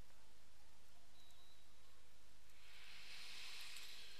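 Low, steady electrical hum and hiss from the microphone's sound system during a pause in recitation, with a faint breath-like hiss swelling near the end.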